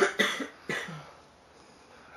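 A person coughing, a short run of about three coughs in the first second.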